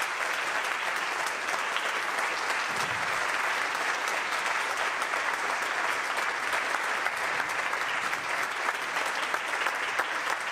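Audience applauding steadily at the end of a piece, a dense, even clapping that neither builds nor fades.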